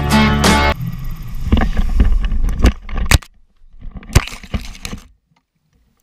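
Background music cuts off under a second in, giving way to rustling and thumps as the motorcycle and camera go down in tall dry grass in a small tip-over crash. Two sharp knocks stand out around the three-second mark, with a few fainter knocks after.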